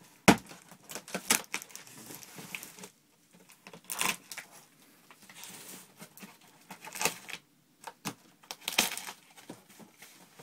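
Cardboard shipping box being opened: a sharp thump against the box just after the start, then several short rips of packing tape being torn off and rustling of the cardboard.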